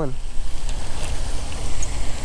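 Steady rushing of wind on the microphone, with a hooked peacock bass thrashing and splashing at the surface close to the bank.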